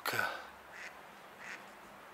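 A duck quacking once at the start, followed by two faint, brief calls.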